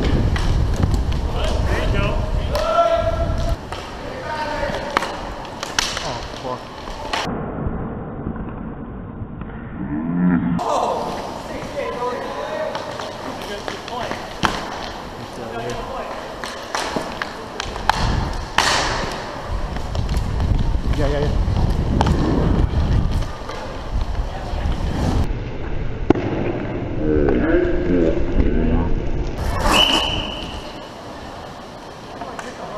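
Inline roller hockey heard from a helmet-mounted camera: the low rumble of skate wheels rolling on the rink floor, broken by many sharp clacks of sticks and the puck, with players shouting at times.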